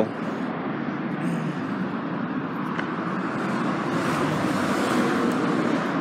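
Steady road traffic noise from cars on a busy street, growing a little louder around four to five seconds in as vehicles pass.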